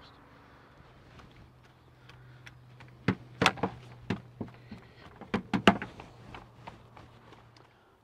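Garden fork being worked into horse manure in a galvanised metal raised bed: a run of sharp knocks and scrapes starting about three seconds in and easing off about three seconds later, over a faint steady hum.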